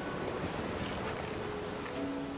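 Steady rushing background ambience from the film's soundtrack, with a faint held tone underneath.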